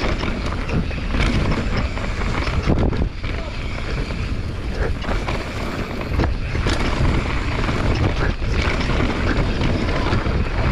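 Wind buffeting the microphone as a mountain bike descends a dirt trail at speed, with tyre noise on the dirt and frequent short rattles and knocks from the bike over bumps.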